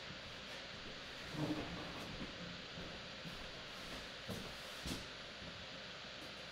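Steady hiss of room noise with a few soft knocks and clunks, about one and a half, four and a half and five seconds in.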